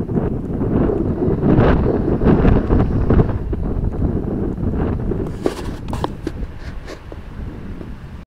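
Wind buffeting a phone microphone: a heavy rumble that eases off in the second half, with a few clicks and knocks of the phone being handled near the end.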